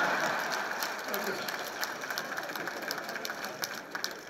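A crowd applauding, a dense patter of clapping that is loudest at the start and eases a little.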